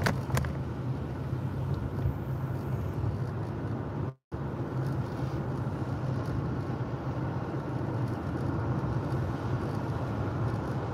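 Steady low hum of a car driving along a paved road, heard from inside the cabin: engine and tyre noise. A couple of short clicks sound right at the start, and the sound cuts out completely for a moment about four seconds in.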